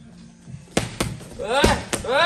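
Two sharp smacks of strikes landing on a padded Muay Thai strike pad, a quarter of a second apart, followed by a short shouted exclamation and another light smack near the end.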